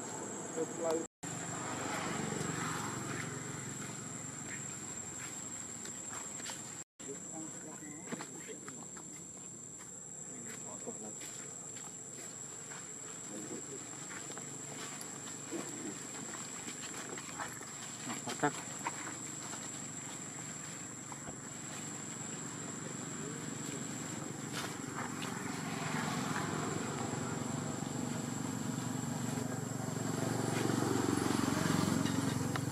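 Indistinct voices over outdoor ambience, with a steady high-pitched insect drone throughout. The sound cuts out completely twice for a moment, about one second and seven seconds in.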